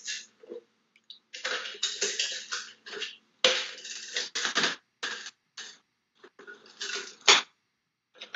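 Dried wafer-paper mache shell crackling and rustling in irregular bursts as the stuck, deflating balloon is pulled away from its inside, ending in a sharp crack near the end as the brittle shell splits.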